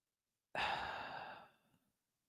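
A woman's breathy sigh or exhale into the microphone, lasting about a second and fading out.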